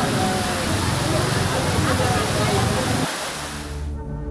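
Floodwater from a breached canal rushing fast through a narrow lane: a steady, loud rush of water, with people's voices over it for the first three seconds. The rush fades away near the end.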